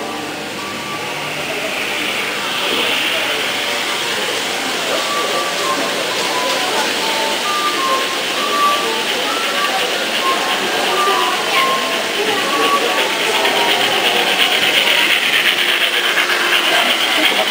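Model railway passenger coaches rolling past close by on layout track: a steady rattling run that grows louder toward the end as the train nears.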